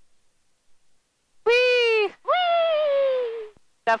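A girl's two excited high-pitched whoops, a short one then a longer one that slides down in pitch, her reaction to the airplane being put into a slip.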